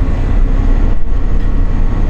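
Chip shop kitchen equipment running: a loud, steady low rumble with a faint steady hum above it.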